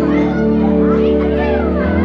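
Live band music: electric guitar and held chords of a slow song, with voices close to the microphone over the band.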